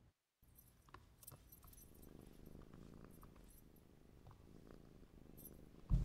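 A cat purring faintly, with the small tag on its collar jingling now and then. A single thump comes just before the end.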